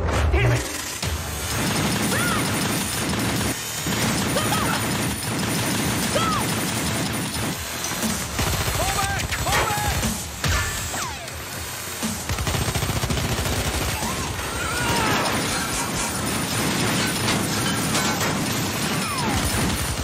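Sustained automatic gunfire from several guns in an exchange of fire: dense, rapid shots with only brief lulls. Shouting voices and a music score lie underneath.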